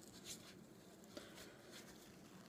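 Near silence, with the faint rustle and rub of a white wipe being worked over the hands and fingers, and a soft tick a little after a second in.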